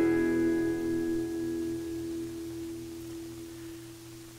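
Acoustic guitar's final strummed chord, played with a partial (drop E) capo, ringing out and slowly fading away at the end of the song.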